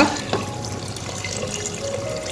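Water poured in a steady stream from a plastic measuring jug into an earthenware pot, splashing into thick chilli-masala curry base.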